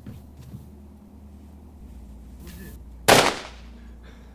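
A single loud gunshot about three seconds in, sharp onset with a short fading tail.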